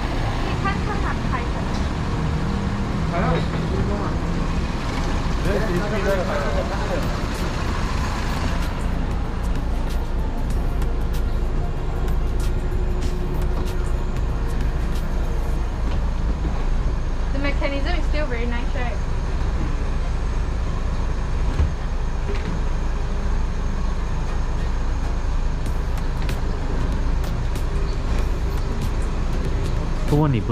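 Peugeot 308 CC idling with a steady low hum, while its electro-hydraulic folding hardtop opens and stows itself, with scattered clicks from the mechanism.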